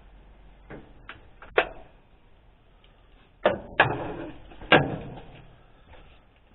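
Hand tools being handled during a repair: a few sharp knocks and clatters in two groups, three light ones over the first second and a half, then three louder ones with a short rattle after them between about three and a half and five seconds in.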